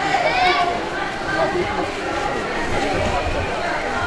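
A large crowd of men's voices, many people speaking and calling out at once and overlapping, with no one voice standing clear.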